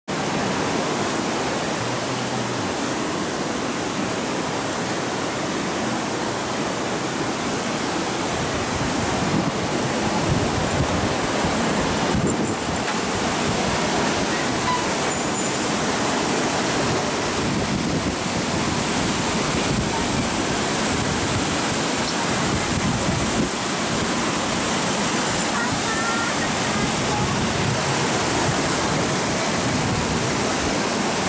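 Steady rushing of the Muko River in flood, a broad continuous roar of fast, churning floodwater.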